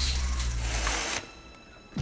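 An office window being opened: a rushing, hissing noise with a low rumble underneath, which cuts off suddenly about a second in.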